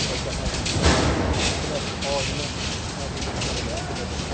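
Wind buffeting a smartphone's microphone in the open air: a constant deep rumble and rushing noise, with a stronger gust about a second in.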